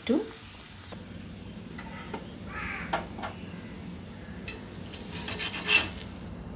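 Adai batter crepe sizzling on a hot tawa griddle, with a metal spatula scraping and knocking against the pan, loudest near the end as it is slid under the crepe to lift it.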